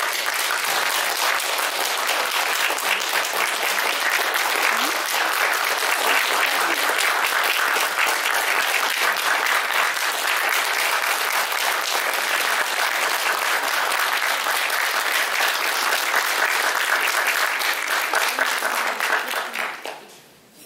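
Audience applause: dense, steady clapping that dies away just before the end.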